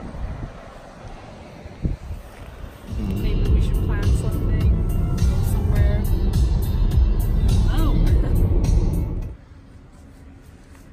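Background music fading out, then, from about three seconds in, loud road and engine rumble inside a moving car with voices over it. The rumble cuts off suddenly near the end.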